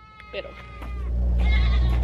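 Goats bleating around the ranch pens, one long, steady high call in the first second. A low rumble comes up about a second in and becomes the loudest sound.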